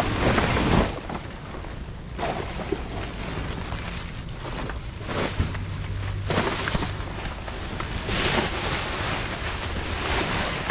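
Plastic bags and cardboard rustling and crinkling in irregular bursts as a dumpster's contents are rummaged through by hand, over a steady low hum.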